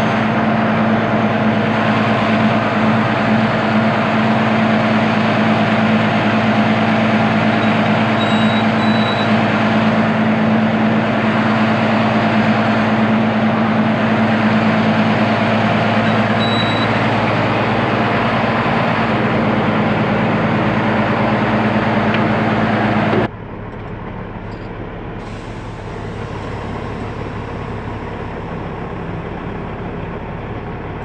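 Heavy truck diesel engines running steadily with a constant droning hum. About 23 seconds in, the sound drops suddenly to a quieter, lower engine rumble.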